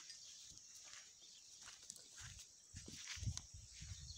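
Faint, steady chirring of insects, with a few low, muffled thumps in the second half.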